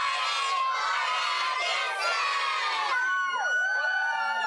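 A class of young children shouting a greeting together at the top of their voices, a long group shout that breaks into scattered cheers and whoops about three seconds in.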